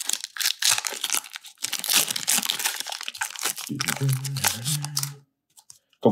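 Foil Pokémon booster pack wrapper being torn open and crinkled by hand, a run of crackling rips for the first three and a half seconds or so. A short low voice follows, and then it goes quiet.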